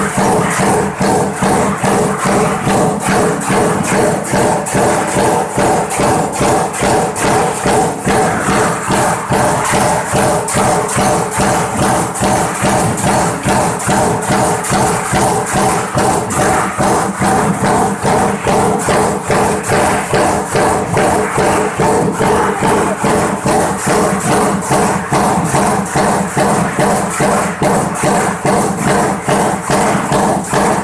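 High-speed power press on a coil-fed stamping line, cycling at about 165 strokes a minute: a loud, rapid, evenly paced metallic clatter, nearly three strokes a second, over a steady machine hum.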